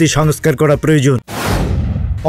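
A man's newsreading voice stops just over a second in, then a sudden booming whoosh with a low rumble starts and fades away: a news-bulletin transition sound effect.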